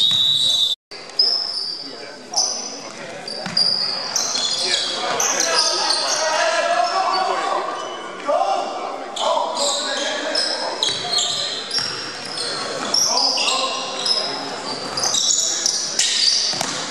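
Basketball game on a hardwood gym floor: the ball bouncing, sneakers squeaking in short high chirps and players shouting, echoing in a large hall. The sound drops out completely for a moment about a second in.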